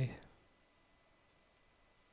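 Two faint computer mouse clicks about a second and a half in, over near-silent room tone.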